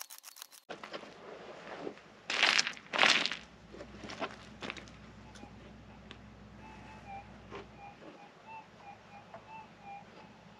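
A pick digging into stony ground: two loud scraping strikes about two and a half and three seconds in, then lighter scrapes. From about six and a half seconds a metal detector gives a string of short high blips as its coil is swept over the hole, responding to the target.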